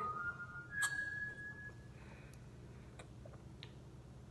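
A brief high, whistle-like steady tone, with a second one about a second in lasting about a second, then a few faint light clicks over quiet room tone.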